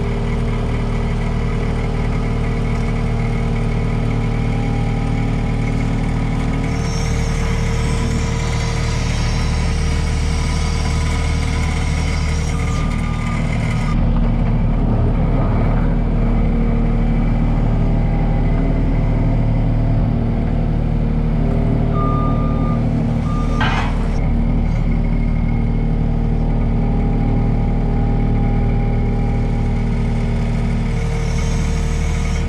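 Skid steer loader's engine running steadily, heard from the operator's seat, its sound shifting and getting a little louder about halfway through as the machine works. A short beeping tone comes about two-thirds of the way in, followed by a brief knock.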